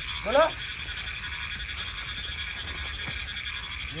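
Frogs croaking in a steady, pulsing night chorus, with a short shout from a man's voice just after the start.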